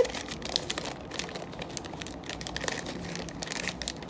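Crinkly silver heart-print wrapping sheet crinkling as hands handle and feel the wrapped gift, with many small irregular crackles and no steady rhythm.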